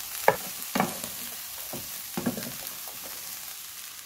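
Chicken pieces and sliced onions sizzling steadily in a frying pan while a spatula stirs them, scraping against the pan a few times.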